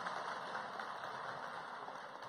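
Faint, even background noise of a hall between speech phrases, slowly fading.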